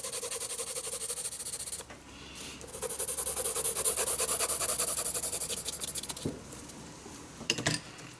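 H graphite pencil hatching on drawing paper: rapid, scratchy back-and-forth strokes, a short pause about two seconds in, then more strokes that fade out, with a couple of light clicks near the end. The pencil is hard, so the strokes are thin.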